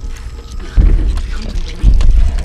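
Heavy, booming footsteps from a film soundtrack: two deep thuds about a second apart, loud enough to shake the whole house, over a quiet music bed.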